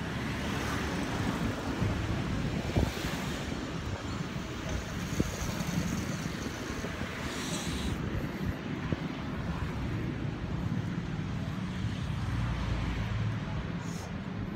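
Street traffic noise with wind buffeting the phone's microphone, broken by a couple of sharp knocks and a brief higher hiss past the middle.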